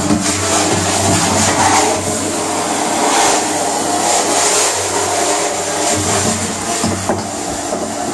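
A cleaning machine's motor running steadily with a low hum, under hissing water and a scraper rasping on the wet inner walls of a plastic storage tank.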